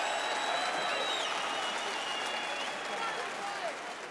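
Arena crowd applauding and calling out after a boxing decision, a steady din of clapping and voices that eases off slightly toward the end, with a thin whistle over it.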